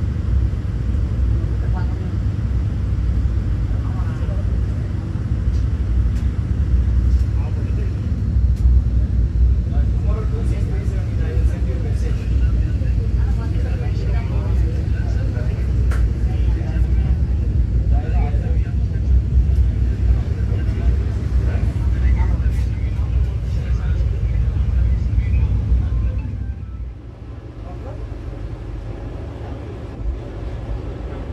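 Steady low rumble of the Vande Bharat electric train running, heard from inside the coach, with indistinct voices of people talking over it. About 26 seconds in it becomes much quieter.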